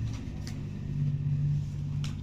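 Low, steady engine hum, swelling a little for a moment near the middle, with a couple of faint clicks.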